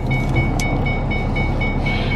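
Inside a car: a high-pitched warning chime beeping rapidly, about four to five beeps a second, over the car's low steady hum, with some rustling as the phone is handled.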